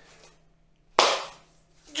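A single sharp hand clap about a second in, ringing briefly in a small room.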